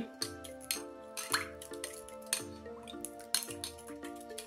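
A metal spoon stirring sugary liquid in a glass bowl, with scattered light clinks against the glass, over background music.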